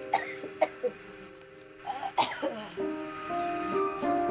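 A person coughing in short, sharp bursts: a few in the first second and a louder cluster about two seconds in. Background music drops out at the start and comes back in near the end.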